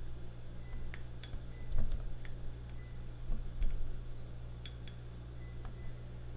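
Faint scattered clicks and light water noise from a hand pressing a car key fob's buttons while holding it under water in a glass, over a steady low electrical hum.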